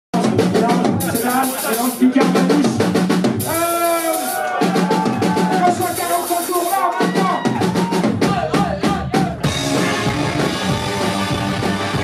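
A rock band playing live. A drum-led intro of bass drum, snare and cymbal crashes runs with a voice singing wordless "oh"s, and the full band with distorted guitars comes in about nine and a half seconds in.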